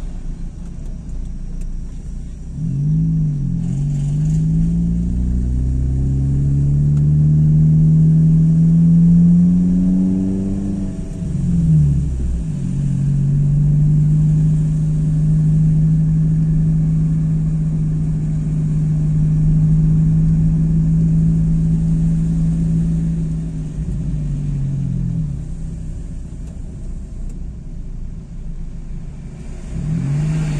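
Car engine heard from inside the cabin, pulling up through the revs for several seconds, dropping sharply as a gear is changed, then holding a steady pitch before easing off near the end, over low road rumble.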